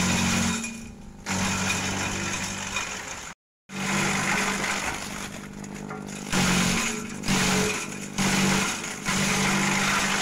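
Kelani Komposta KK100 shredder running and chopping leafy branches fed into its chute. A steady motor hum swells into a louder burst of cutting noise each time a branch goes in, about once a second through the second half. The sound cuts out for a moment about a third of the way in.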